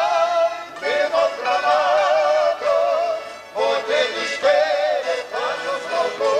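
Live wedding band music: a lead melody with a strong, wavering vibrato, played in short phrases broken by brief gaps.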